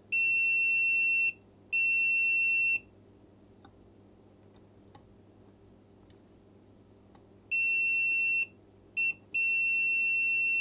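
Multimeter continuity beeper sounding a steady high beep each time the probe touches pads that are shorted to ground: two beeps of about a second in the first three seconds, then near the end another one-second beep, a short blip and a longer beep.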